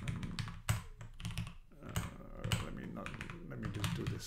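Computer keyboard being used: irregular clicks of single keystrokes as arrow and shift keys are pressed while editing.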